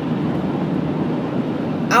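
Steady road and engine noise heard from inside a car's cabin while driving, with a woman's voice coming back in at the very end.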